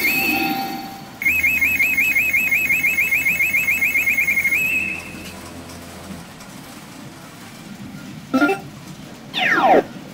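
Pachinko machine electronic sound effects: a rapid warbling beep, about six pulses a second, for about three seconds, then quieter. A short swoosh comes about eight seconds in and a falling whistle-like sweep near the end.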